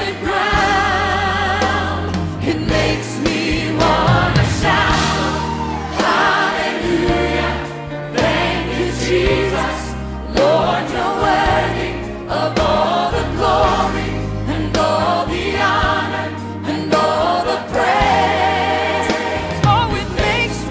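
Praise and worship music: a choir singing with vibrato over a band, with a bass line moving every second or two underneath.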